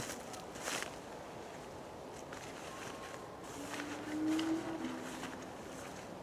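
Footsteps crunching on dry leaf litter near the start, then a few fainter rustles, over a faint steady outdoor background. A faint low call in the second half.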